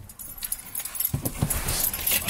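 A person getting into a car's driver seat: clothes rustling against the seat and car keys jangling, with a few soft knocks about a second in.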